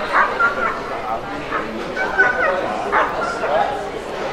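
A dog barking and yelping in short, repeated high calls, over people talking.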